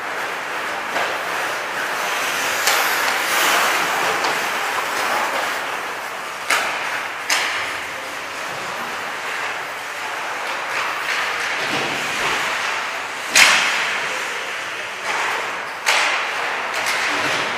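Ice hockey practice: a steady scraping hiss of skate blades on ice, broken by about seven sharp cracks of sticks and pucks striking, the loudest about thirteen seconds in.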